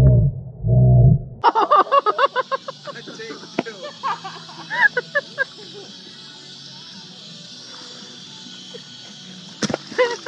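Muffled underwater sound from a camera held under the water of a swimming pool. About a second and a half in, the camera breaks the surface and the sound opens up to voices and music over a steady hiss, with a single sharp knock near the end.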